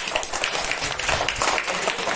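A class of schoolchildren applauding: many hands clapping rapidly at once.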